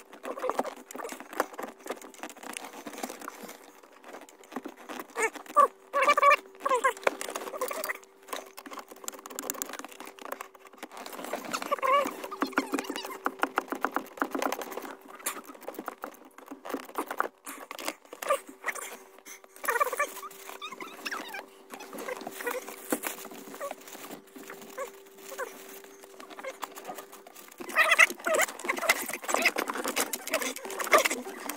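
Close-up handling noise from hands working plastic trim and wiring under a car's dashboard: irregular small clicks, scrapes and rustles, with a faint steady hum underneath that stops near the end.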